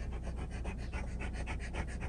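A large dog panting rapidly and evenly, several breaths a second, tired after a walk.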